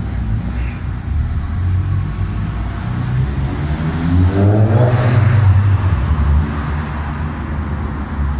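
Car engine accelerating hard: a low exhaust rumble, then the revs climb steeply about three and a half seconds in and are loudest around five seconds before easing off.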